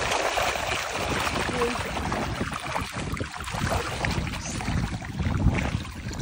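Shallow rocky stream rushing and splashing over stones, with wind buffeting the microphone as a steady low rumble.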